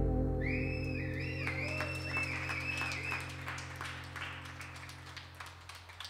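The song's last chord rings out and slowly fades away on the electric guitar and band, while the audience claps and a few whistles rise and fall in the first half.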